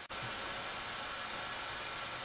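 Steady, even hiss of background noise, such as microphone or room hiss, with no other sound.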